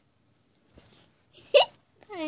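A young girl's single short, sharp vocal sound about one and a half seconds in, rising quickly in pitch, like a hiccup or squeak.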